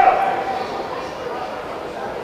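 Background voices at an outdoor ground, with a short high-pitched call right at the start that fades within about half a second.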